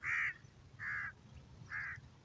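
A bird calling three times in the background: short, fairly faint calls about a second apart.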